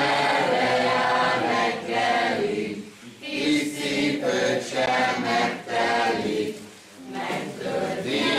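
A group of voices singing a song together in phrases of a few seconds, with brief pauses about three and seven seconds in.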